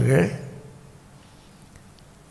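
A man's voice, speaking into a microphone, ends a phrase about half a second in. Then comes a pause of faint room tone.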